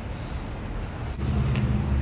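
Low rumble of a running motor vehicle, becoming a steadier, louder hum a little over a second in.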